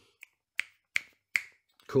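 Fingers snapping three times, a little under half a second apart, after one faint click: a man snapping his fingers while he tries to recall a name.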